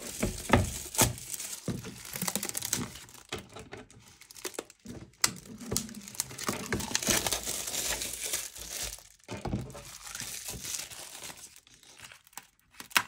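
Clear plastic wrapping crinkling and crackling in irregular bursts as it is pulled and peeled off a stretched canvas by hand.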